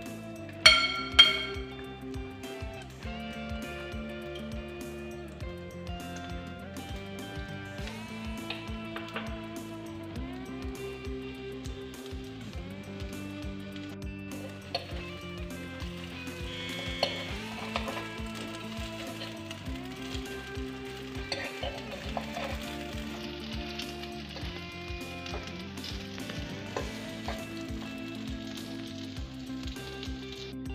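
Egg-dipped bread frying in butter in a non-stick pan, sizzling, louder in the second half, under steady background music. About a second in, two sharp ringing clinks of a metal fork against a glass bowl.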